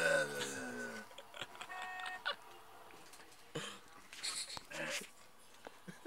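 A man laughs about a second, his voice sliding down in pitch. Then scattered faint clicks and a few short beeps.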